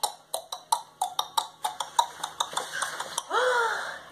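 A woman imitating a horse with her mouth: rapid tongue clicks, about five a second, mimicking the clip-clop of hooves, then a short vocal whinny rising and falling in pitch near the end.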